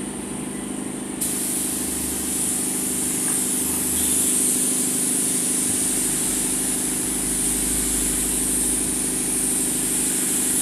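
Gravity-feed paint spray gun hissing as compressed air atomises the paint, starting about a second in and then held steadily. A steady low machine hum runs underneath.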